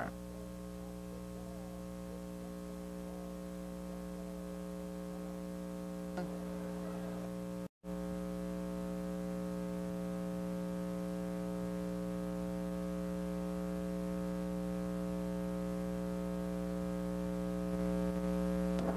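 Steady electrical mains hum with a buzzy edge, slowly getting a little louder, cut by a brief dropout to silence about eight seconds in.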